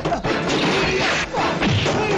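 Movie fight-scene sound: dubbed blows and crashing impacts over the action score, with men yelling as they grapple.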